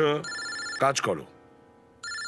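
Mobile phone ringing with an electronic ringtone: one short ring near the start, and the next ring beginning right at the end.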